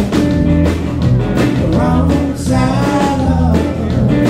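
Live blues band playing: a man singing over electric guitar, bass guitar and drums, with a steady drum beat and sung phrases that break off and start again.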